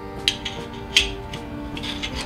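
Background music, with a few light clicks and taps as Ender 3 Pro frame parts are handled and fitted together, the sharpest about a second in.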